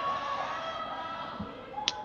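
Steady background hum of the curling rink, with several faint steady tones that fade slightly; a brief low sound and a click come near the end.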